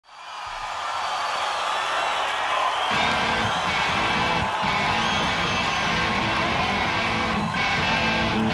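Live rock band with electric guitar, fading in over crowd cheering; the bass and drums come in about three seconds in and the full band plays on.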